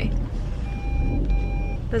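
Car's rear parking-sensor warning beeping inside the cabin: two half-second beeps in a row over a low rumble. It is sounding though nothing is behind the car, a false alert.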